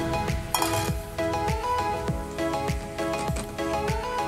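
Background music: held melody notes over a steady beat of a little under two drum strokes a second.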